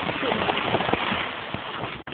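A steady, noisy rustle with faint voices and small clicks mixed in.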